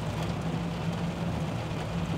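Steady low engine hum and road noise heard inside the cab of a Volvo 440 truck driving on a wet road, with rain on the windscreen.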